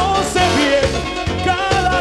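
Live cuarteto band music, recorded to cassette: a melodic lead line over a repeating bass-and-percussion dance beat.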